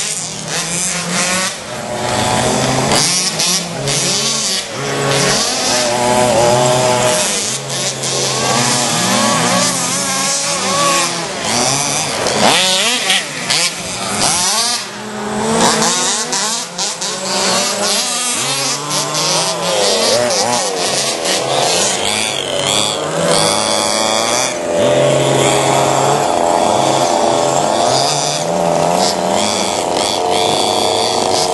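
Several 1/5-scale RC cars' small two-stroke petrol engines buzzing as they race, their pitch rising and falling over and over with the throttle, the engines overlapping.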